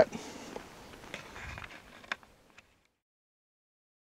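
Faint outdoor wind noise with a few light clicks, fading out to dead silence a little under three seconds in.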